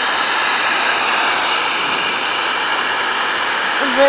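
Hair dryer running steadily: a constant rush of blown air with a faint motor whine.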